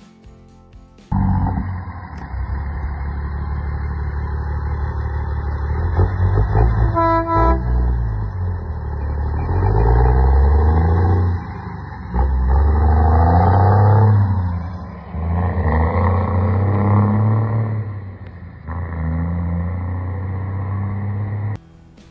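Cummins L10 inline-six diesel of a 1950 Mack B-series rat-rod semi tractor driving past, its engine revving up and dropping back several times. A short air horn blast sounds about 7 seconds in.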